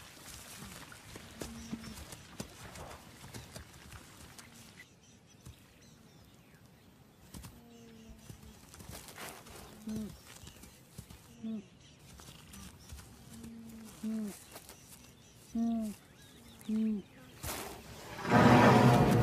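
An animal giving a series of short pitched calls, each bending down in pitch at its end, coming every second or two and growing louder toward the end. There is a faint noisy background and a brief sharp noise just before the end.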